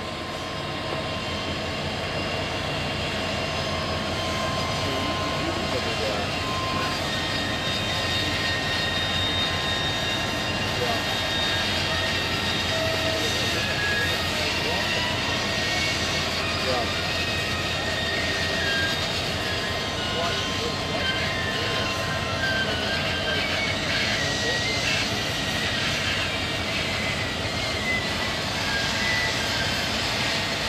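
Milwaukee Road 261, a 4-8-4 steam locomotive, rolling slowly past at close range: steady running noise with several thin high tones that shift in pitch.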